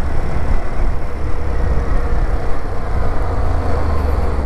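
Steady wind rush buffeting the camera's microphone while a Bajaj CT 125X single-cylinder motorcycle is ridden at road speed. Engine and road noise run underneath.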